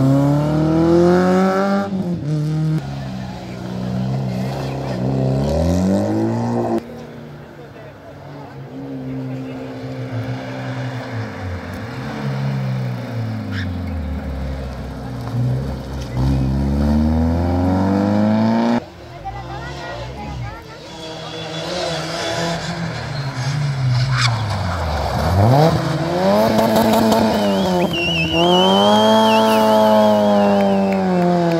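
Rally car engines revving hard through a tight hairpin, one car after another. Each engine's pitch drops as the car slows for the bend, then climbs again in steep runs through the gears as it accelerates away.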